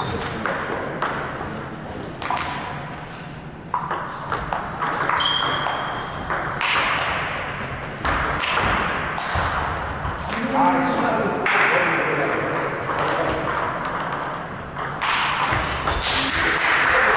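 Table tennis rally: a celluloid-type ball clicking off the rackets and the table in quick succession.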